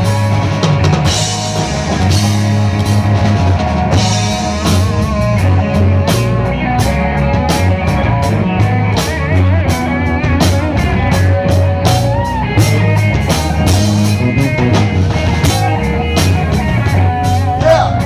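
Live rock band playing an instrumental passage: electric guitars over bass guitar and a drum kit. The cymbals are struck much more often from about four seconds in.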